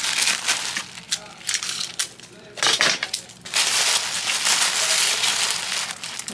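Tissue paper crinkling and rustling as hands roll and fold it into a wrapped bundle. It eases off for a moment about two seconds in, then comes back dense and continuous.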